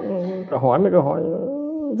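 A person speaking, the words trailing into a long drawn-out vowel that rises and falls in pitch near the end.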